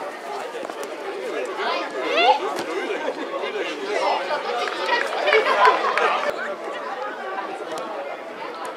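Many overlapping voices of players and spectators chattering and shouting at a youth football match, with louder high-pitched calls about two seconds in and again in the middle.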